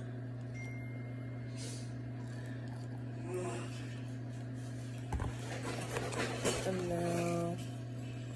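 Table knife scraping Nutella out of a glass jar, with a knock about five seconds in and irregular scraping after it, over a steady low hum. A short hummed voice sound comes near the end.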